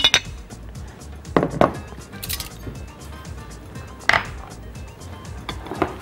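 Glass bottle and glass bowls being handled on a kitchen counter: a handful of separate clinks and knocks, the sharpest ringing clink about four seconds in, over quiet background music.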